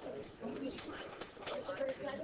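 Indistinct background chatter of several people talking at once, with no single clear voice.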